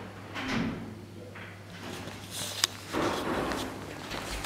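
A wooden room door with a lever handle being opened: a handle-and-latch clatter, one sharp loud click about two and a half seconds in, and shuffling steps, over a steady low hum.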